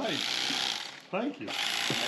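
Electric fillet knife running as it cuts a fish fillet away from the skin on a wooden board: a steady buzzing hiss for about a second, a short break, then running again from about a second and a half in.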